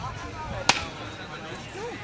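A single sharp click or snap about two-thirds of a second in, over faint voices of a gathered crowd.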